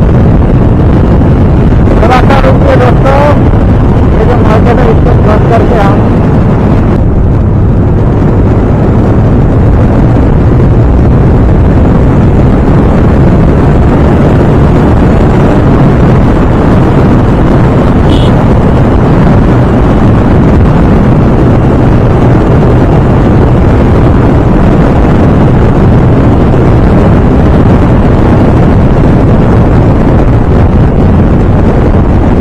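Heavy wind rush over the microphone of a TVS Apache RTR 160 2V motorcycle riding at about 90 to 100 km/h, with its single-cylinder engine running steadily at high revs underneath.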